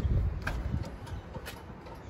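A few faint, short clicks and knocks over a low rumble, as a car's rear door is swung open and the car is moved around by hand.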